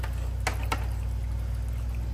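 Aquarium filter running: water pouring and splashing onto the tank surface over a steady low hum, with two light clicks about half a second in.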